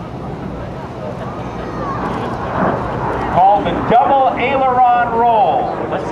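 Lockheed T-33 Shooting Star's jet engine heard from the ground as the jet climbs, a rushing roar that grows louder over the first few seconds. A public-address voice is heard over it in the second half.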